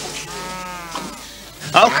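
An animal's long, drawn-out call, falling slightly in pitch, followed near the end by a second, louder drawn-out call.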